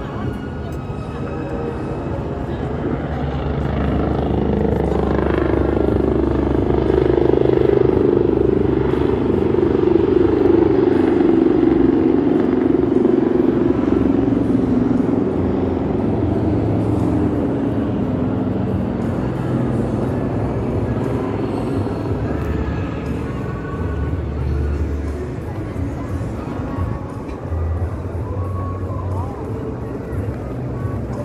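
Busy outdoor city ambience: voices of passersby, some music, and a low engine rumble that swells and grows louder for several seconds in the first half, then eases off.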